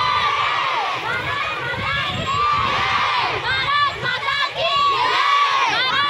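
A crowd of schoolchildren shouting and cheering together, many voices overlapping, growing louder about halfway through.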